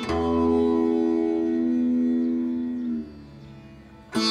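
Surbahar (bass sitar) in a slow alap of Raag Jog: one plucked low note rings with a long, steady sustain for about three seconds, then fades to a faint resonance near the end.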